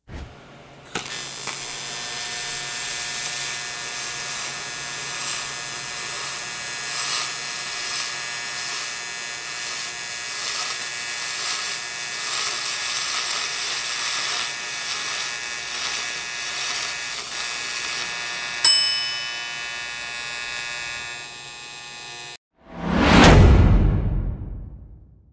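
Steady electric buzz and hiss of aluminum arc welding, a spool-gun MIG bead laid with a TIG weld running alongside. A single bell-like ding rings out about three-quarters of the way through. The welding sound cuts off shortly before the end and gives way to a loud whoosh.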